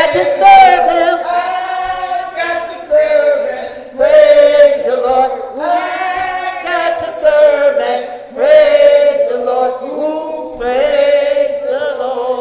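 A small church choir of men and women singing together in short, held phrases.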